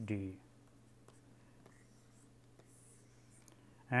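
Faint, scattered taps and scratches of a stylus writing on a pen tablet, over a steady low hum.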